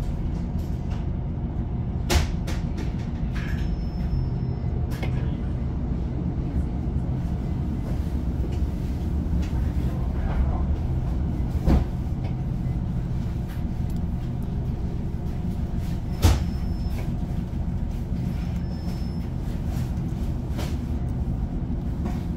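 Inside a Class 156 Sprinter diesel multiple unit running along the line: its Cummins diesel engine gives a steady low drone under the rumble of wheels on rail. A few sharp knocks come through, the loudest about sixteen seconds in.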